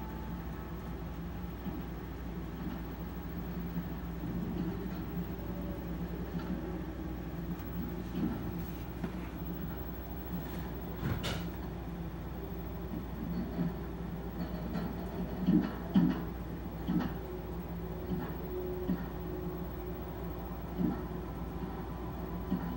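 A steady low hum of background noise, with a sharp click about eleven seconds in and a cluster of short soft knocks later on.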